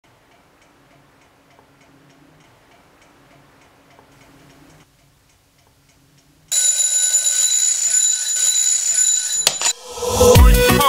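Twin-bell mechanical alarm clock ticking faintly, then ringing loudly from about two thirds of the way in, cutting off just before the end.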